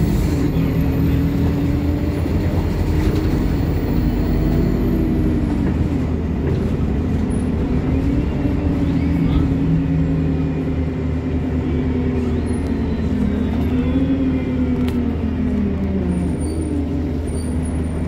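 Alexander Dennis Enviro 200 MMC single-deck bus heard from inside the saloon while under way: a steady low engine and drivetrain drone whose pitch slowly rises and falls as the bus speeds up and slows.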